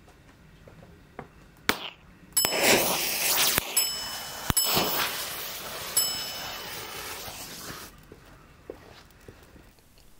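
Standard electric matches firing with sharp pops, each lighting a length of green visco safety fuse, which burns with a dense hiss for several seconds and fades out about eight seconds in.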